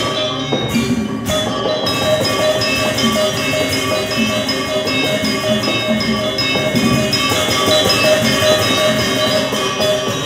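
Live gamelan ensemble playing a dance accompaniment: bronze metallophones and gongs ringing in a steady rhythm over drumming.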